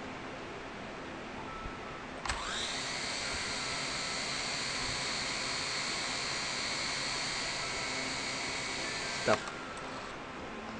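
L701 toy quadcopter's four propeller motors, run up while the drone sits on the ground. The whine rises sharply about two seconds in, holds steady and high, then falls away as the motors stop near the end.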